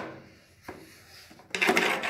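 A spirit level being handled against a plywood board: a faint click, then a short scraping rub about one and a half seconds in.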